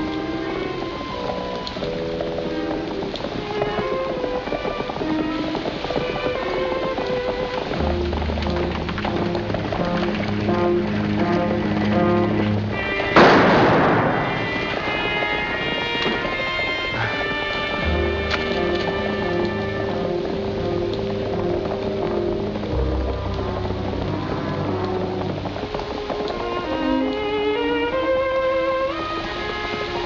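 Dramatic film score of held notes over a slow, stepping low bass line, broken about 13 seconds in by a single dueling-pistol shot with a short echo.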